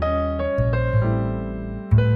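Piano music: notes struck one after another and left to ring over deep bass notes, the bass changing about half a second in and again near the end.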